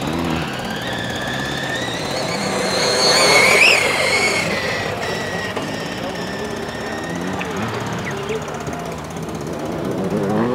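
Electric motor of an RC Formula 1 car converted from nitro to electric, whining as the car is driven. The pitch climbs to a peak about three and a half seconds in, then drops and holds before fading.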